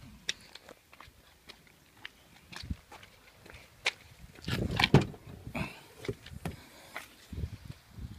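Footsteps and scattered light knocks. About halfway through comes a louder cluster of clunks and rustling as the Nissan Elgrand's rear tailgate is unlatched and swung open.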